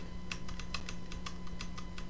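Computer keyboard keys tapped in quick succession, about six light clicks a second, as recent edits are undone.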